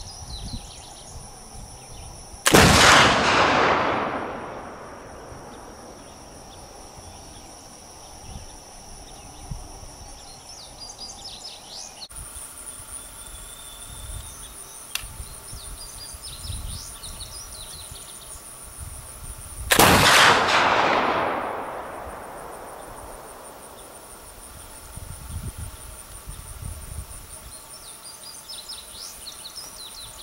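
Two shots from a Kibler Woodsrunner muzzleloading rifle loaded with Goex black powder, about 17 seconds apart, each a loud blast that echoes away over a second or so. Between them come faint clicks and scrapes of a quick reload with the ramrod, using a thin pre-greased patch and no over-powder wad.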